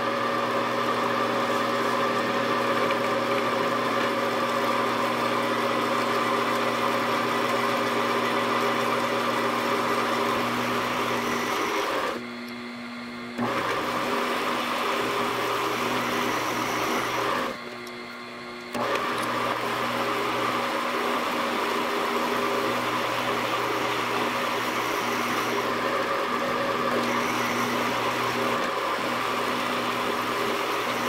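Milling machine running with a boring head cutting the starter bore in an aluminium adapter plate: a steady motor hum under the hiss of the cut. The cutting hiss drops out briefly twice, about twelve and eighteen seconds in, leaving only the hum.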